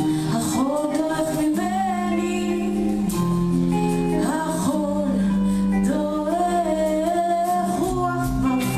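Live band performance: a woman sings a gliding melody over electric guitar, bass and drums.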